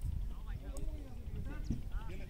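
Distant, indistinct voices of several people calling and chatting, over a steady low rumble.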